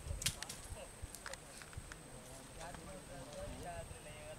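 Faint voices of people talking at a distance, with a few sharp clicks and knocks in the first second and a half.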